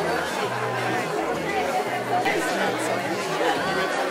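Crowd chatter: many voices talking over one another at a social gathering.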